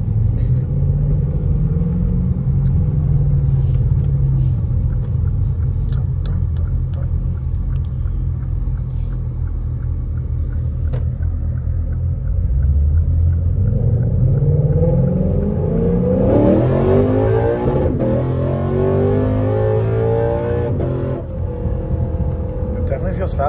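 Lexus RC F's 5.0-litre V8 heard from inside the cabin, running at low revs at first. From about halfway it pulls hard, its note climbing steeply in pitch in several steps through the upshifts, then easing off near the end.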